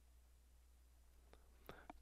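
Near silence: room tone with a faint steady low hum and a few faint short clicks in the second half.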